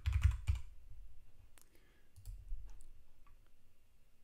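Typing on a computer keyboard with mouse clicks: a few scattered, light keystrokes and clicks, after a louder low thump and cluster of clicks at the very start.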